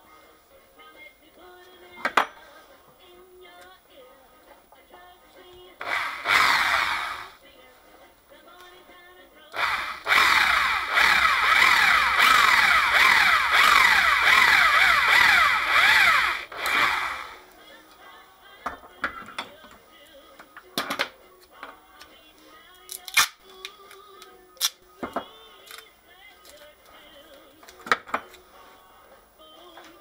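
Power drill boring into the plastic lid of a maintenance-free lead-acid car battery: a short run about six seconds in, then a longer run of about seven seconds, its pitch sliding repeatedly as the bit bites. Occasional sharp knocks of tools being handled, with faint music in the background.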